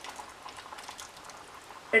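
Okra pieces sliding from a steel bowl into simmering curry gravy in a pan, then the gravy's faint bubbling with light ticks.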